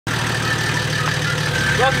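Nissan Patrol ute's diesel engine idling steadily.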